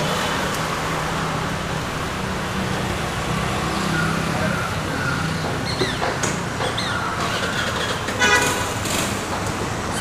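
Road traffic noise with a steady engine hum, and a vehicle horn tooting briefly near the end.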